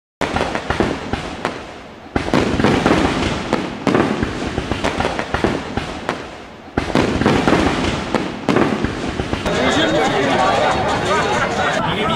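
Fireworks going off: five loud bursts about two seconds apart, each trailing off into crackling. In the last few seconds they give way to the chatter of a crowd.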